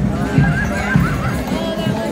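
Hooves of carriage horses clip-clopping on the paved street as a horse-drawn carriage passes, over band music with a regular beat and crowd voices.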